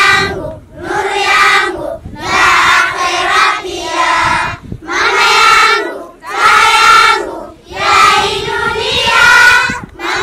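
A group of schoolgirls singing in unison, in phrases of a second or two with short breaks for breath between them.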